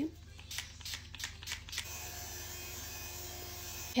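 Several quick spritzes from a makeup setting spray pump bottle. From about two seconds in, a small battery handheld fan runs with a steady whirring hiss close to the face.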